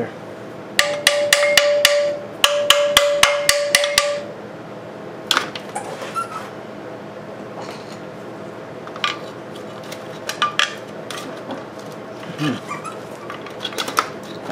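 Hammer tapping the stuck side cover of an antique Briggs & Stratton 5S engine in two quick runs of strikes, about six a second, with a metallic ring; the cover is still on tight. Scattered single knocks and tool clatter follow.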